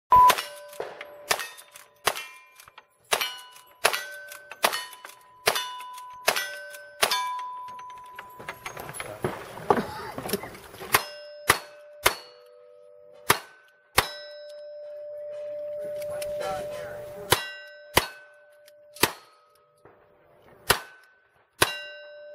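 Rapid gunshots, about ten from a rifle, then after a short pause about nine more from a single-action revolver. Each shot is followed by the clear ringing ding of a steel target being hit.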